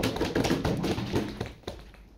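Laptop keys and casing tapped and clicked in an irregular run, the last click coming near the end.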